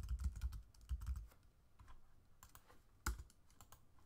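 Computer keyboard being typed on: a quick run of keystrokes with low thuds in the first second or so, then a few scattered key presses and one louder click about three seconds in. The keys are entering number values.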